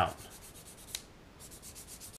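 Fine-grit sanding stick rubbed rapidly back and forth over a clear plastic model-kit part, smoothing a filled mold mark: a faint, fast, scratchy rasp of about ten strokes a second. There is a small click about a second in, a brief pause, and then the strokes resume.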